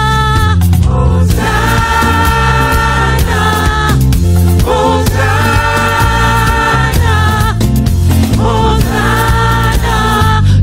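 Gospel worship music: phrases of long, held sung notes with choir voices over a steady low accompaniment, three phrases in all.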